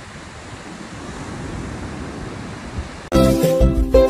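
Steady rush of sea surf and wind on the microphone at the shoreline. About three seconds in it cuts abruptly to loud music with clear plucked notes.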